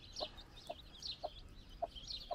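A broody hen clucking softly, short low clucks about every half second, over thin high peeping from the chicks under her.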